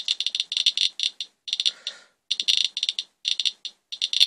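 Radiation Alert Inspector EXP+ Geiger counter with a pancake probe, clicking rapidly at random intervals, the clicks crowding together and thinning out with a few brief gaps. It is counting radioactivity on a swipe of rainwater, at a rate several times the usual background of about 34 counts per minute.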